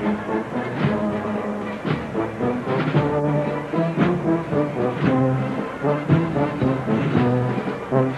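Brass band playing a slow processional march, with held brass chords over drum strokes about once a second.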